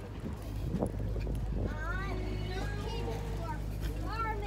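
Voices of people talking nearby, not close to the microphone, starting about halfway through, over a steady low rumble. A single knock about a second in.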